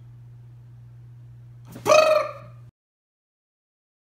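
A man's voice shouts "Boo!" once, loudly, about two seconds in, over a steady low hum. The sound then cuts off abruptly to dead silence.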